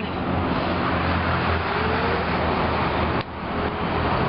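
Steady road-traffic noise: a vehicle engine's low hum under a broad rushing sound. About three seconds in, a single light click as a putter strikes a golf ball.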